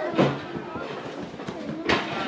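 Indistinct chatter of several people, adults and children, with one sharp knock near the end.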